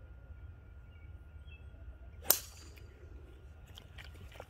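A golf club striking a teed ball on a tee shot: one sharp crack a little over halfway through, ringing briefly after.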